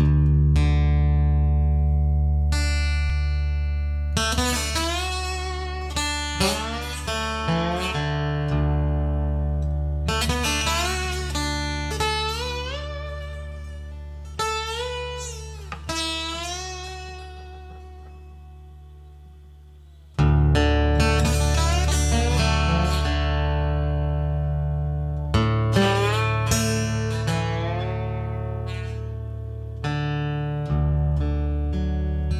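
Bottleneck slide guitar playing a slow country blues intro: gliding, sliding notes over a low bass note that rings and slowly fades, struck again about two-thirds of the way through.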